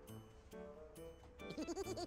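Background music with a steady beat, and a person's quick, warbling laugh breaking in about one and a half seconds in.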